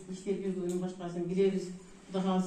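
Speech only: a woman talking into a hand microphone, in a speech rhythm with short pauses.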